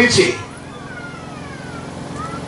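A man's voice through a microphone and PA finishes a phrase in the first half-second, then a pause filled with a steady low hum and a few faint tones that glide downward.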